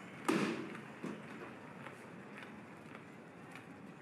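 A thrown cricket bat landing with a loud crash, followed about a second later by a smaller knock, then a few faint clicks.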